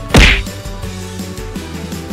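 A single loud whack-like sound effect about a fifth of a second in, over steady background music.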